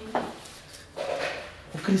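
Voices: brief, short utterances, with a short sharp sound just after the start, then a man begins to speak near the end.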